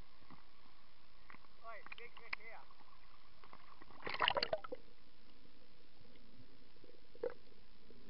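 Muffled underwater sound picked up by a submerged camera: a steady hiss, a distorted voice heard briefly through the water about two seconds in, and a short louder burst of water noise about four seconds in, with a single click near the end.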